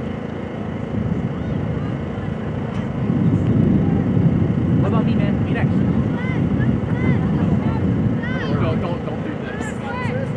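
Open-air ambience at a soccer field: a low, steady rumble on the microphone that swells from about three seconds in, with distant, indistinct voices over it.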